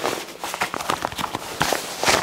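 Waterproof nylon drysuit fabric rustling and scraping in a quick, irregular series as the wearer moves his arms and handles the sleeve and the folded-down flap over the front zip.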